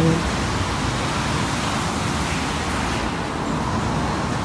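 Steady rushing noise with no distinct events or changes.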